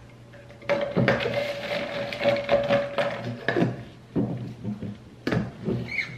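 A plastic lid and drinking straw being fitted onto an insulated tumbler holding ice and sparkling water: clicks and knocks of plastic on the cup, with a drawn-out squeak lasting a couple of seconds from about a second in, and more knocks near the end.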